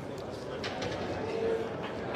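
Low murmur of spectators in a pool hall, with a short steady hum about halfway through and a few faint clicks.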